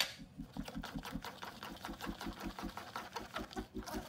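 Metal spoon stirring thick batter in a plastic bowl: a fast, continuous run of wet scraping clicks. Beneath it runs a steady low pulse, about six beats a second.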